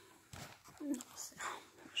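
A woman's quiet, whispered speech, a few words under her breath.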